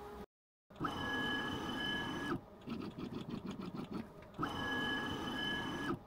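Makera Carvera Air desktop CNC's stepper-driven axes moving under machine control: a steady high whine, then about two seconds of uneven, stuttering ticks, then the steady whine again near the end.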